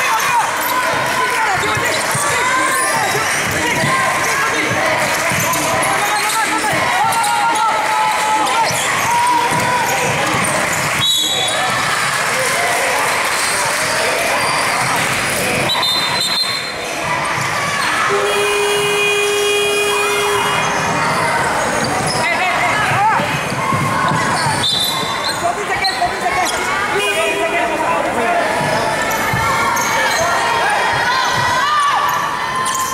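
Basketball being dribbled on a hardwood court in a large hall, under steady chatter and shouts from players and spectators. Short referee whistle blasts sound a few times, and a steady horn sounds for about two seconds a little past halfway.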